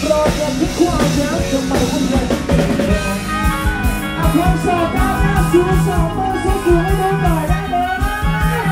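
A live Thai ramwong dance band playing loudly, with a steady drum-kit beat under keyboards and a melody line that comes in about three seconds in.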